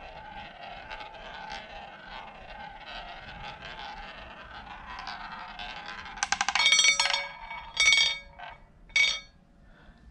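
Roulette ball rolling around the track of a spinning wooden roulette wheel, a steady whirring roll. About six seconds in it drops and clatters against the diamonds and pocket frets in three ringing bursts of clicks, about a second apart, the loudest part, before settling in a pocket.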